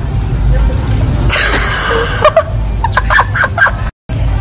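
A girl's high-pitched squealing giggles, a run of short rising squeaks over a steady low rumble, cut off suddenly near the end.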